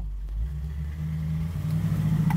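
1972 Camaro's 350 V8 with headers and dual exhaust running while the car is driven, heard from inside the cabin. Its note changes about half a second in and gets louder toward the end as it pulls harder.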